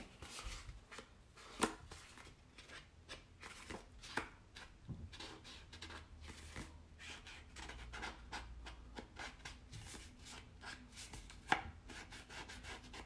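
Ink pad dabbed and rubbed along the edges of a sheet of patterned paper to ink them: a long run of faint, irregular taps with light scraping.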